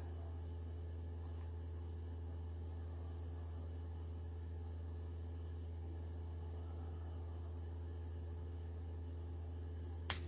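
Steady low hum with a few faint, short clicks in the first few seconds.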